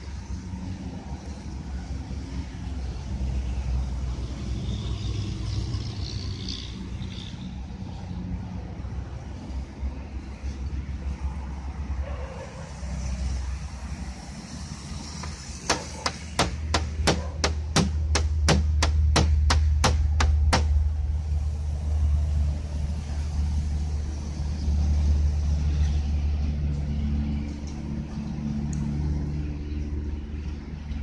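Low, steady vehicle rumble. A little past the middle, a quick run of about fourteen sharp clicks comes at roughly three a second for five seconds.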